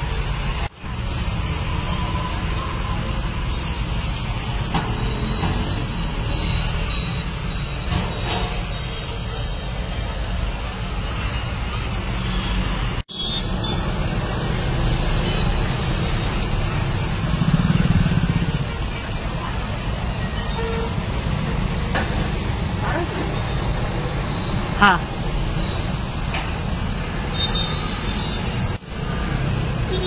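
Steady low rumble of outdoor street noise, with traffic and faint background voices, dropping out briefly three times.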